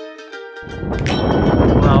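Plucked-string background music, guitar- or ukulele-like, cut off about half a second in. Loud wind buffeting the microphone replaces it and grows louder.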